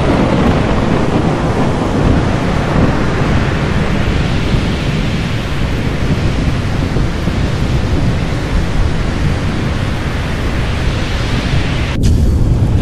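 Loud, steady thunderstorm sound effect: a low rumble under a dense, rain-like hiss.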